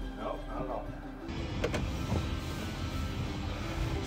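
Car cabin noise, a steady low rumble with hiss, that comes in suddenly about a second in, under quiet background music.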